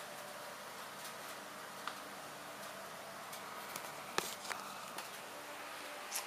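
Quiet room tone with a faint steady hum and a few soft clicks, the sharpest about four seconds in; the dyno engine is not running.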